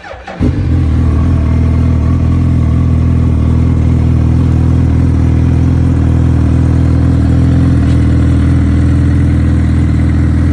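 2008 Suzuki B-King's inline-four engine being started on the electric starter: a brief crank, catching within about half a second, then running at a steady idle.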